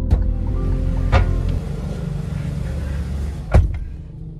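A car door shut with a loud thump about three and a half seconds in as the driver gets in, after a couple of sharp clicks earlier on. Background music plays under the first part and stops about a second and a half in.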